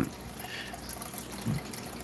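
Aquarium water trickling and bubbling steadily from the tank's water circulation.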